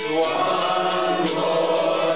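A roomful of people singing a folk song's chorus together with the lead singer, many voices holding long notes.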